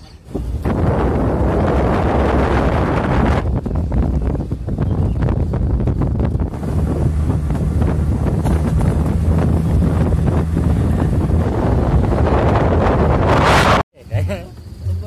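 Heavy wind buffeting the microphone of a camera carried on a moving vehicle, with a low steady drone of the vehicle underneath. It cuts off suddenly just before the end.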